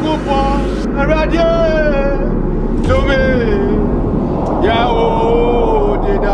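A man singing in long, drawn-out gliding notes with short breaks between phrases, over a steady low rumble.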